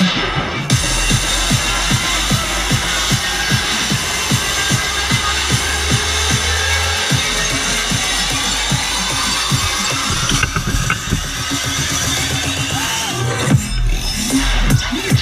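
Dubstep-style electronic bass music from a live DJ set played loud over a festival sound system: a fast, steady beat of about three hits a second over a deep bass, with a rising sweep building through the last few seconds.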